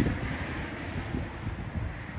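Wind buffeting an outdoor phone microphone: an uneven, gusty low rumble.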